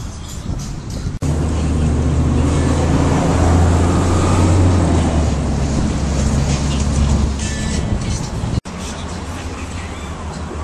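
City street traffic heard close up at an intersection, dominated by a loud, steady, deep engine hum from vehicles such as a city bus nearby. The sound changes abruptly about a second in and again near the end, where the recording is cut.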